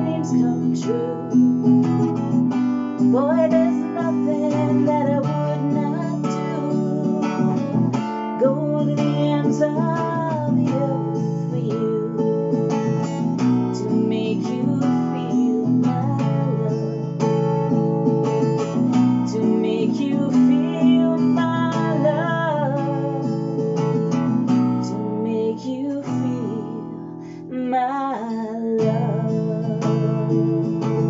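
A woman singing a song while strumming an acoustic guitar capoed up the neck.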